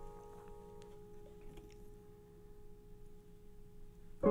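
A held piano chord dying away quietly: its upper notes fade out about a second in while the lowest note rings on until just before the end, with a few faint clicks.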